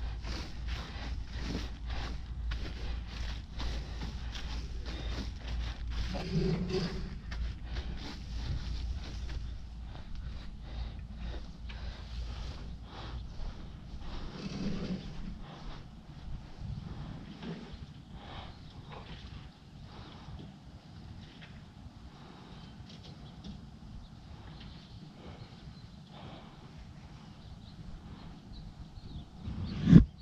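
Shredded wood mulch being spread by gloved hands, a dense run of crunching and rustling chips that thins out about halfway through, then footsteps on grass. A sharp knock right at the end is the loudest sound.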